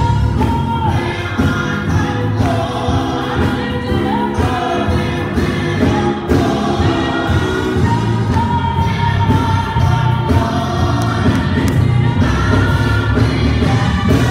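A gospel praise team of several singers, men and women, singing together into microphones over steady instrumental accompaniment.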